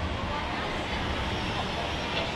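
Steady background noise of a large indoor exhibition hall, with indistinct voices in it.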